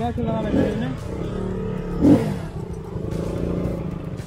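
Motorcycle engine running as the bike rides along, a steady rumble with a brief louder burst about two seconds in. A voice is heard right at the start.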